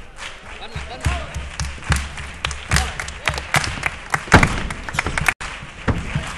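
Irregular thumps and sharp slaps and knocks from a group of performers moving on a wooden stage, the loudest about four and a half seconds in, with voices and shouts mixed in, in a large hall.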